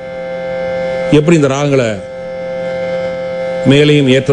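Harmonium holding a steady drone of sustained notes, with a man's voice coming in briefly about a second in.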